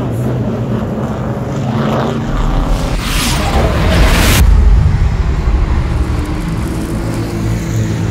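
Race car engines, a low rumble that swells loud about two seconds in, with a rushing whoosh sweeping through around three to four seconds in.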